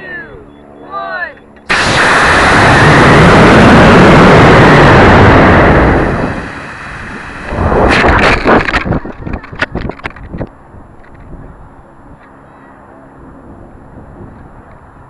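A model rocket motor ignites with a sudden loud blast about two seconds in and burns for about four seconds, heard from a camera riding on the rocket, before fading into rushing air. About eight seconds in, another loud burst comes, followed by several sharp knocks over the next two seconds, typical of the ejection charge firing and the recovery system deploying. Steady wind noise follows.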